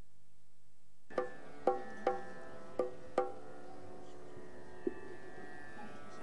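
Plucked string instrument: five single notes struck one after another, each ringing out with a rich, shimmering sustain over a low steady hum, then a faint click.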